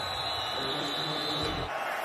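Steady background ambience of a televised football game's field sound, with a faint, thin high tone running through it; it changes abruptly about three quarters of the way in at an edit.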